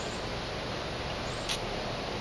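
Steady outdoor background hiss, with one short high-pitched chirp about one and a half seconds in.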